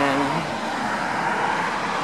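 Steady road-traffic noise: an even rushing hiss with no single vehicle standing out.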